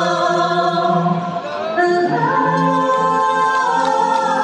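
Vocal quartet of two men and two women singing in close harmony through microphones, holding long chords; one chord is sustained through the second half.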